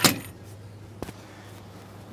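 A sharp clack as a boat's fiberglass tackle-box drawer with a stainless flush latch is shut, then a lighter click about a second later.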